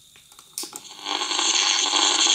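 A portable AM radio receiver switched on with a click about half a second in, then, from about a second in, a loud steady hiss of radio static with faint whistling tones in it, which the maker calls 'some howling': the receiver is picking up the homemade walnut-shell transmitter on the long- and medium-wave bands.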